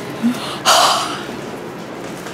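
A person's short, sharp breath, about two-thirds of a second in, lasting a fraction of a second.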